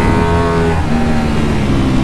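Ducati Panigale V4 Speciale's V4 engine pulling hard on track, heard onboard over rushing wind. Its pitch climbs briefly, steps down about a second in, then eases slowly lower.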